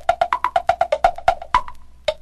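Clock-like percussion ticks in a swing song's break: a fast, even run of sharp clicks alternating between a higher and a lower pitch, like a tick-tock, stopping about three-quarters of the way through.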